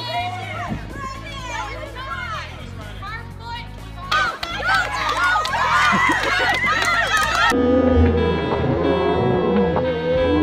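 A small group of people shouting and cheering on walkers in a race, the voices growing louder and more crowded about four seconds in. About three-quarters of the way through, the cheering cuts off and music with guitar comes in.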